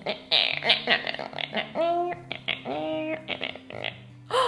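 A woman making wordless vocal sounds, short hums and strained noises with two longer ones rising in pitch about two and three seconds in, over soft background music with low held notes.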